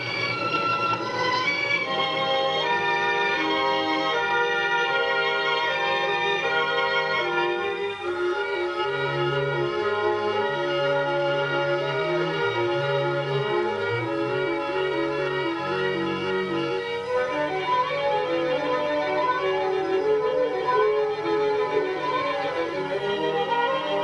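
Orchestral film-score music led by bowed strings, moving over changing bass notes, with a quickly alternating two-note figure through the middle.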